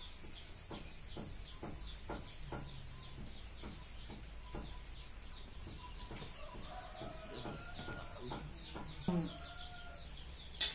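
Chickens clucking faintly: short clucks about twice a second, then longer drawn-out calls in the last few seconds. A fast, high, repeating chirp runs behind it throughout.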